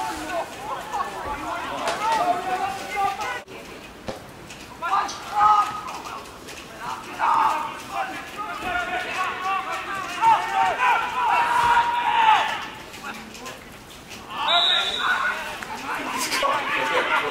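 Indistinct voices calling and shouting on and around a football pitch, coming in bursts, with a single sharp click a few seconds in.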